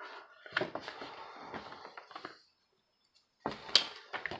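Rustling and light clicking of something being handled for about two seconds, followed by a few sharp clicks near the end.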